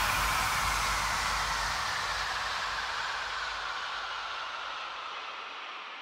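Closing noise wash of an electronic dance track: a white-noise swell and reverb tail left after a final impact, fading steadily away. The deep rumble under it dies out first, and the bright top falls away near the end.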